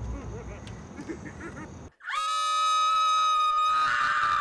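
Faint muffled voices, then a brief drop to silence, then a woman's long, high, steady scream held for the last two seconds.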